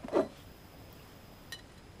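Quiet workshop room tone with a single faint click about one and a half seconds in, as a metal ski file is fitted into its edge-angle file guide.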